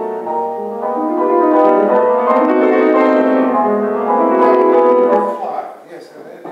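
Grand piano playing a classical passage in full, sustained chords, which stops about five and a half seconds in.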